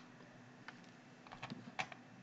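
Faint, scattered clicks from a computer being operated: a handful in the second half, the loudest just before the end.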